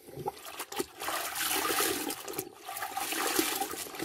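A hand swishing a cloth around in a plastic bucket of water: a steady sloshing and splashing that builds over the first second, with a few light clicks.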